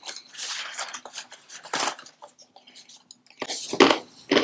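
Paper word slips rustling and being handled as one is picked from a pile on the table, in short irregular crinkles and clicks, with a louder rustle about three and a half seconds in.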